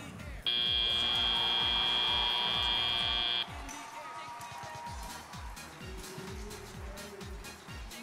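FIRST Robotics Competition end-of-match buzzer: one steady, buzzy tone lasting about three seconds, starting about half a second in, signalling that the match time has run out. Arena music with a steady beat plays underneath.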